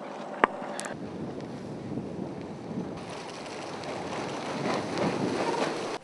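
Wind rushing over the microphone on an open beach: a steady noise without pitch that swells slightly near the end, with one short click about half a second in.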